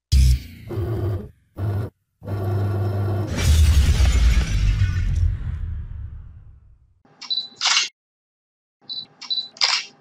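Sound effects of an animated logo intro: four short heavy hits in the first two seconds, then a long crash that builds and dies away over about four seconds, and near the end a few short, high swishes.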